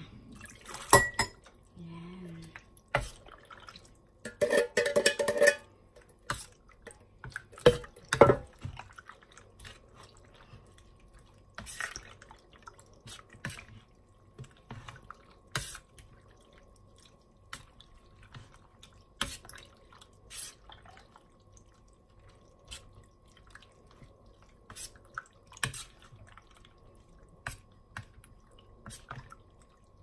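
Metal spoon stirring jelly cubes and shredded young coconut in syrupy liquid in a plastic bowl: scattered wet clicks and clinks of the spoon against the bowl, with a denser, louder stretch about four to five seconds in.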